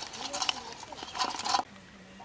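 Live fish thrashing in a metal plate, their bodies slapping and rattling against it in a quick run of bursts that is loudest just before it stops, about three-quarters of the way through.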